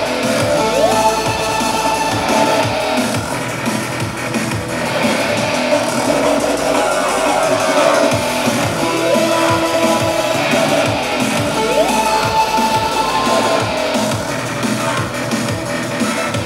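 Live electronic music played on a Virus TI keyboard synthesizer and a laptop, loud and steady. Held synth tones are broken by short rising pitch sweeps about a second in, around nine seconds and again around twelve seconds.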